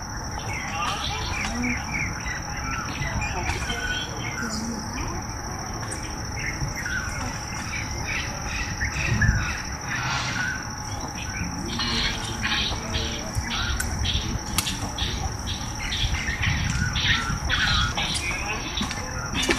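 Birds chirping and calling in many short notes throughout, over a continuous high-pitched insect drone.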